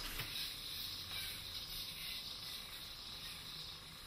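Faint, steady whirring hiss of a spinning yo-yo swung around on its string in around-the-world loops, slowly fading.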